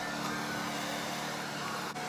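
Handheld hair dryer running steadily on its medium heat setting: a steady rush of air with a faint hum under it.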